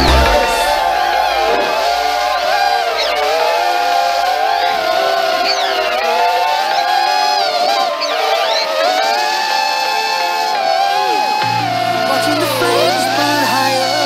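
Whine of a HappyModel Crux3 toothpick quadcopter's motors, wavering up and down in pitch with the throttle, with a couple of sharp dips near the end. Electronic music plays under it; its bass drops out just after the start and comes back near the end.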